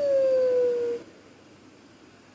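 A baby's long drawn-out vocal cry or squeal that slides slowly down in pitch and stops about a second in.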